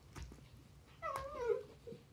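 Corgi puppy giving one short whining call about a second in, wavering and falling in pitch and lasting under a second: the puppy's "talking".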